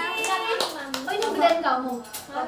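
Young women's voices talking, with a few short sharp claps mixed in.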